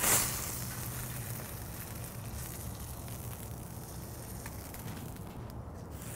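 Metal spatula scraping under a cheeseburger patty on a steel flat-top griddle at the start, then fat sizzling steadily on the hot griddle with a few small ticks.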